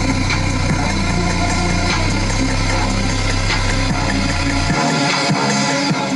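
Car audio system playing music at high volume through subwoofers with very heavy deep bass. The deep bass cuts out suddenly near the end while the rest of the music keeps playing.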